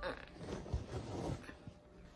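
Handling noise: a hand rubbing and bumping against the recording phone, a scuffing rustle with a light knock about three-quarters of a second in, fading out before the end.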